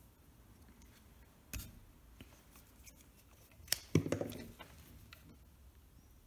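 Small clicks and scrapes of metal multimeter probe tips against the brass terminal studs of an electric motor. There is one tap about a second and a half in, and a louder cluster of taps and a short scrape around four seconds.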